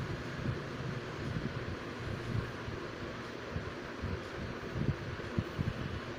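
Steady background hiss with irregular low rumbling, like moving air from a fan buffeting the microphone.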